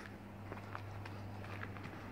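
Footsteps of people walking, irregular short steps over a steady low hum.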